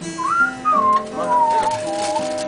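A person whistling a melody in a clear, pure tone that slides up and down between notes, over an acoustic guitar being picked; the whistling falls away in the second half, leaving the guitar.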